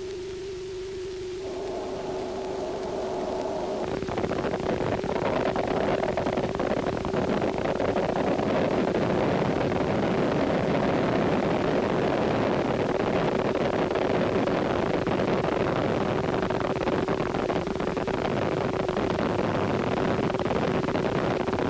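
Burya cruise missile's rocket boosters firing at launch: a noise that builds about a second and a half in, jumps to full loudness about four seconds in and then holds steady. A steady hum tone from the old film soundtrack runs underneath.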